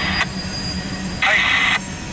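CSX mixed freight train's cars rolling past, a steady low rumble heard through the windshield from inside a car.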